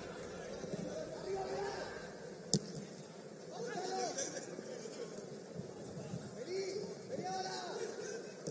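Football players shouting and calling to one another on the pitch, short rising and falling calls over a steady background hum of the ground. A single sharp knock about two and a half seconds in.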